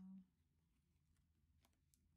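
Near silence: room tone with a few faint clicks, after a held spoken 'uh' ends right at the start.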